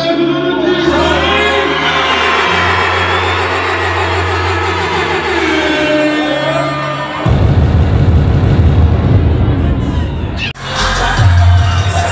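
Live hip-hop concert: a vocal over a bass-heavy backing track from the PA for about seven seconds, then a loud stretch of crowd cheering over the music. Near the end the sound cuts out abruptly, and the music comes back with a heavy bass line.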